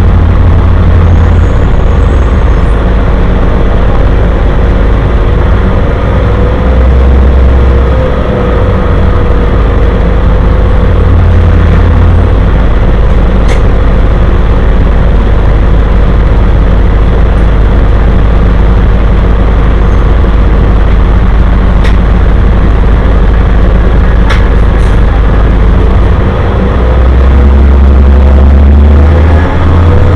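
City transit bus running, heard from inside the passenger cabin: a loud, steady low engine and road drone with a faint whine that wavers in pitch, a few sharp rattles or clicks, and a swell in the low drone near the end.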